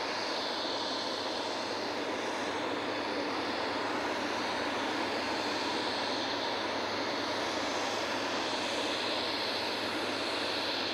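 Boeing 747's jet engines running at low power as the airliner taxis, a steady, even rushing noise.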